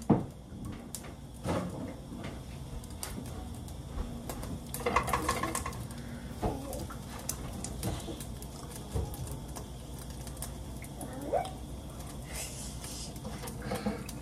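Light kitchen handling sounds: scattered soft clicks and knocks of dishes and utensils on the counter, with a brief voice sound about five seconds in.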